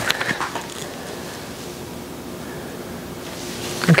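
Steady room hiss with a faint hum and no distinct event, with a few faint soft rustles in the first half-second.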